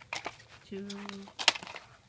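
Sharp clicks and taps of a plastic three-disc DVD case being handled, a few small ones near the start and one loud click about one and a half seconds in, beside a woman's drawn-out spoken word.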